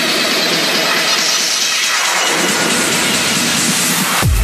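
Techno build-up in a DJ mix: a loud rising white-noise sweep with the kick and bass cut out, the sign of a breakdown leading into a drop.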